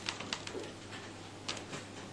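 A quiet pause in a small comedy venue: room tone with a steady low hum and a few faint clicks.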